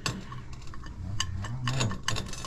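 Sharp metallic clicks and clinks from handling small empty aluminum gas cylinders and their valves: one click right at the start and a few more in the second half.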